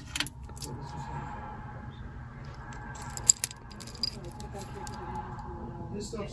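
Metal jewelry clinking and jingling as it is handled: a wristwatch's metal link band and nearby chains rattle, with a cluster of sharp clicks about three seconds in, over a faint steady hum.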